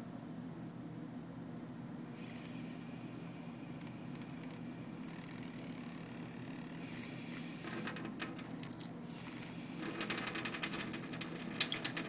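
Single-lever kitchen faucet being eased open very lightly: faint scattered clicks around the middle, then from about ten seconds in a dense irregular crackle as a thin stream of water starts falling into the stainless steel sink, over a steady low hum.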